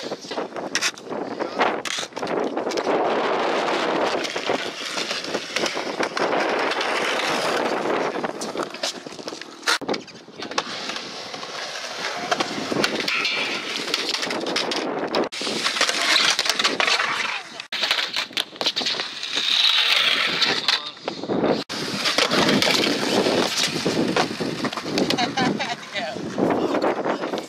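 Skateboard wheels rolling on concrete with repeated sharp clacks and slaps of the board popping and landing, among people's voices.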